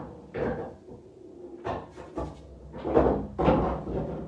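A series of dull knocks, the two loudest about half a second apart near the end.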